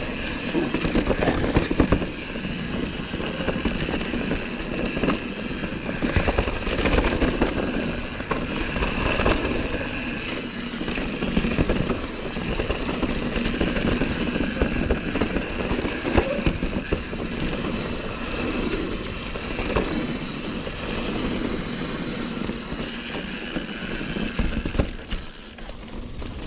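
Mountain bike riding down a dirt trail, heard close up from the rider's camera: a steady rush of tire and wind noise with frequent knocks and rattles as the bike runs over bumps.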